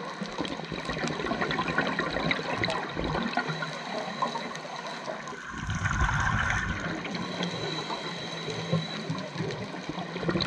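Underwater sound on a scuba dive. A dense crackle of small clicks runs throughout, and from about halfway through comes the rushing, rumbling gush of a diver's scuba regulator exhaling a burst of bubbles.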